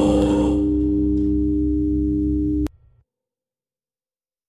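The last moments of a heavy post-rock song. The band's high cymbal wash fades within the first half second, leaving a steady low held note that cuts off abruptly a little under three seconds in.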